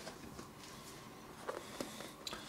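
Faint handling noise from a large hardback book held open: a couple of soft taps and rustles about one and a half seconds in, over a low steady background hum.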